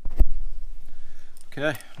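A single sharp click just after the start as a paint marker and small rod parts are handled on a tabletop, over a low handling rumble. A man starts speaking in the last half second.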